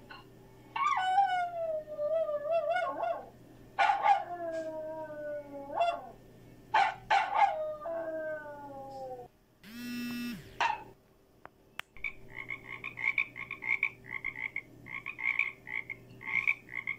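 Small curly-coated dog howling in three drawn-out calls that waver and fall in pitch. From about twelve seconds in, after a cut, a frog calls in quick repeated pulsing croaks.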